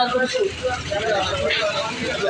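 Voices talking close by in a busy street, with road traffic running behind them.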